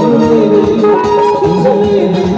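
Live band music on a synthesizer keyboard: an ornamented folk-style melody of held notes with quick turns, over a steady drum beat.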